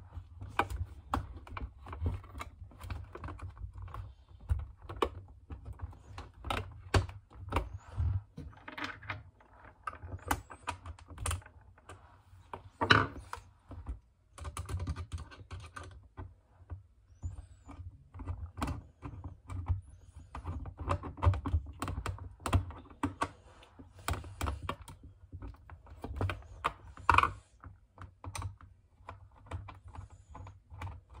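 Rapid, irregular clicks and taps of a screwdriver and fingers working on a Schutt F7 football helmet's plastic shell and face mask as the face-mask screws are fitted into their T-nuts. A sharper knock comes about 13 seconds in and again near 27 seconds.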